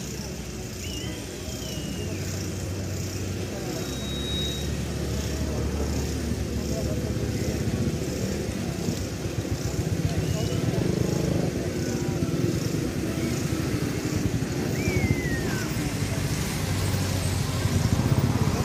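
Indistinct voices over a steady low rumble, with a few faint high whistling glides.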